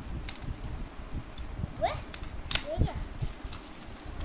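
A hinged plastic pencil box being handled and opened, with a few sharp clicks, over low background voices and two short rising voice-like sounds near the middle.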